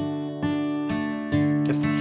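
Steel-string acoustic guitar fingerpicked close to the bridge: single notes of a chord plucked one after another, about two a second, each ringing on over the others.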